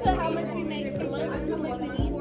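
Indistinct chatter of several voices over steady background music.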